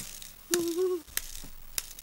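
A few sharp, separate mechanical clicks, one at the start and two more in the second half, with a short steady low tone in between.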